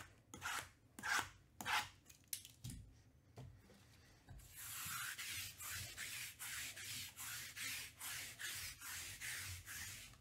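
Hands handling cardboard trading-card boxes: a few short scuffs in the first three seconds, then a long stretch of rubbing in quick strokes, about two to three a second, from about four and a half seconds in.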